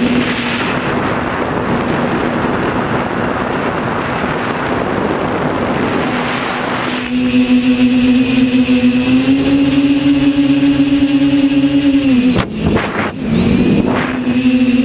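TBS Discovery quadcopter's brushless motors and propellers, heard from the onboard camera. For the first half there is a broad rushing whoosh of props and wind. Then a steady buzzing whine sets in, rises slightly, drops and dips out briefly near the end, and comes back.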